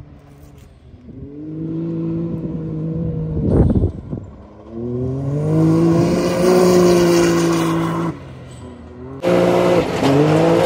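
Can-Am Maverick X3 Turbo RR's three-cylinder turbo engine revving as the side-by-side drives through dirt turns, its note climbing and falling with the throttle, with a brief rush of noise about three and a half seconds in. Near the end the sound switches abruptly to the engine at high revs heard from inside the cab.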